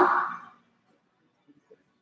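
A man's spoken count trails off in the first half second, then near silence, with two faint soft ticks about a second and a half in.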